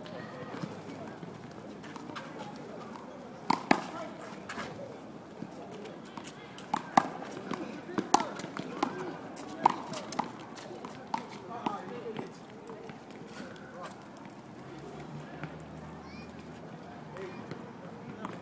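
Rubber handball being struck by hand and rebounding off a concrete wall in a one-wall handball rally: a run of sharp smacks, most of them between about three and twelve seconds in, then fewer.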